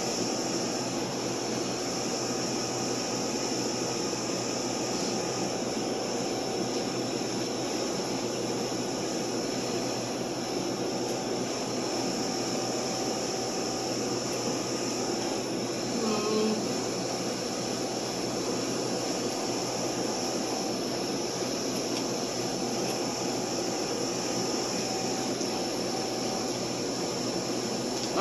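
Steady mechanical hum and hiss of indoor cooling and ventilation equipment, with one brief faint sound about sixteen seconds in.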